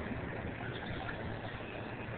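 Steady background noise of city street traffic, with no single distinct event.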